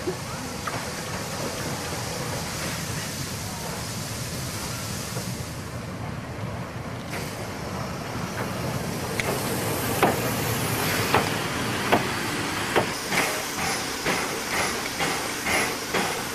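Harz narrow-gauge 2-10-2T steam locomotive 99 7236-5 standing at the platform, hissing steadily. From about nine seconds in, a run of short, sharp knocks joins the hiss, roughly one a second.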